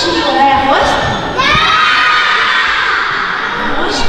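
A crowd of children shouting together in a large hall, with one long held shout through the middle.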